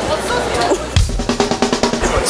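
Music with a drum kit: a bass drum hit about halfway through, followed by a fast snare drum roll.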